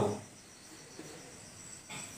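Faint, steady high-pitched insect trill over quiet room tone, with a faint scratch or tap of chalk on a blackboard about a second in.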